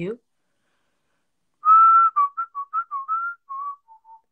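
A woman whistling a short tune by mouth: one long held note, then a quick run of short notes stepping up and down, ending on a lower note.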